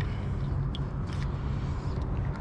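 A steady low rumble with two short clicks a little under half a second apart about a second in, as a spinning fishing reel is handled.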